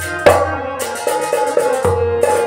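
Live Kashmiri folk music: a hand drum struck in a quick, even rhythm over sustained harmonium chords, with one especially loud drum stroke about a quarter second in.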